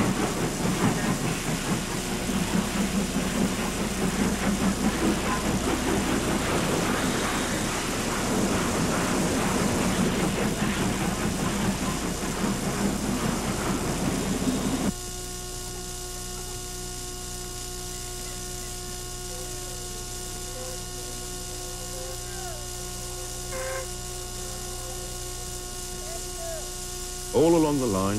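Train running on rails, a dense rattling rumble of the carriages, which cuts off abruptly about halfway through. A steady electrical hum with a few faint small sounds follows.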